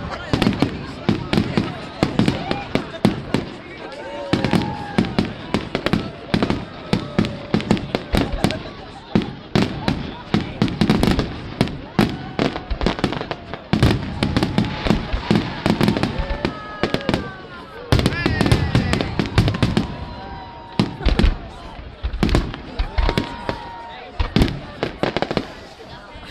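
Fireworks display: aerial shells bursting in a rapid, continuous string of bangs, several a second, with voices of onlookers heard between them.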